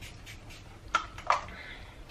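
Two quick sprays from a fragrance body-mist bottle, about a third of a second apart.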